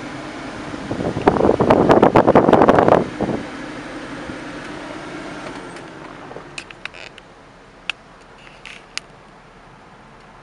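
Steady hum of the truck's cab ventilation fan, with a loud rustling crackle lasting about two seconds near the start. The hum drops away about halfway through, leaving a few separate sharp clicks.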